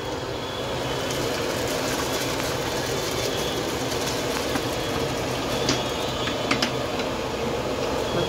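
Steady rushing, hissing noise at a large steaming biryani pot as parboiled rice is tipped into it from a big aluminium pot, with a few light metal clicks in the second half.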